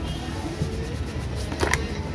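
Cardboard packaging being handled: a graphics card's black inner box slid out of its printed cardboard sleeve, with a short cluster of sharp scraping clicks near the end, over a steady low background rumble.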